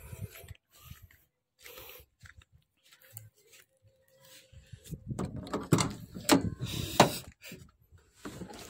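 Handling noises from getting into a pickup: a few faint clicks, then in the second half a run of knocks and clicks as the driver's door is opened and someone climbs into the cab, with the sharpest knocks near the end. The engine has not yet been started.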